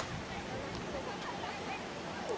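Open-air field ambience: a steady background hiss with faint, distant voices of players calling across the soccer pitch.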